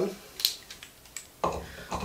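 Handling of a cordless drill-driver as it is brought down onto a screw head: a sharp click about half a second in, a few faint ticks, then a duller sound near the end.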